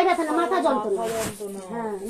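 Speech: a woman talking, with a short hissing sound about a second in.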